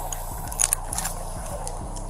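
Handling noise on a body-worn camera as an arm brushes across it: a few short scratchy clicks and rubs between about half a second and a second and a half in, over a steady low background.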